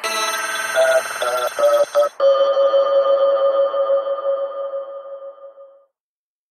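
Electronic music with the beat dropped out: bell-like synthesizer tones, a few quick pulses, then one long held note that fades away to silence near the end, as a psytrance track winds down.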